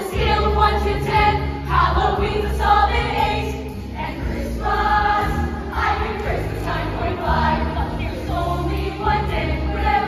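A youth musical theatre ensemble singing a show tune together over an accompaniment track with a steady bass line.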